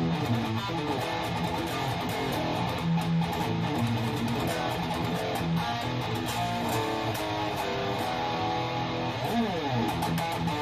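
ESP M-II electric guitar with a passive DiMarzio Crunch Lab pickup, played through an EVH 5150 amp: continuous riffing and sustained notes, with a note sliding down in pitch about nine seconds in. Picked up by a phone's built-in microphone from the amp in the room, not mic'd.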